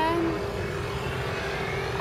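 Steady engine drone over a low rumble, with one even tone held throughout and a faint rising whine in the second half. A voice trails off briefly at the very start.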